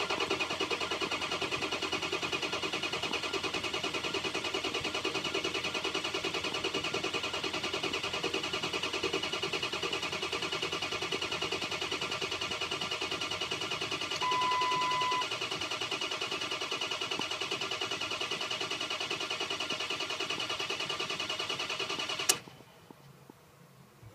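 Ford 6.0 Power Stroke diesel cranking on the starter without catching, a steady even pulsing that stops suddenly near the end. A short beep sounds about halfway through. It won't fire because the failed high-pressure oil pump is bleeding off pressure and injection control pressure stays under 400 psi, short of the 500 needed to start.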